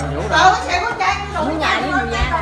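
Several people's voices talking over one another in a crowded entryway, no single clear speaker.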